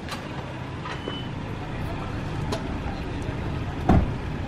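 Honda Mobilio's engine running with a steady low rumble, growing slightly louder as the car creeps forward to pull out. A few light clicks, and a sharp knock near the end.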